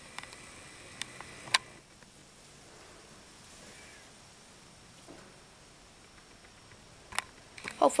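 A few light clicks and taps over faint hiss: several in the first second and a half, then one more about seven seconds in.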